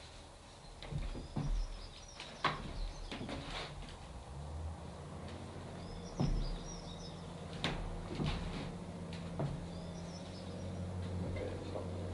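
Garden ambience: scattered soft knocks and scuffs of shoes stepping and shifting on paving slabs, with small birds chirping now and then over a low steady hum.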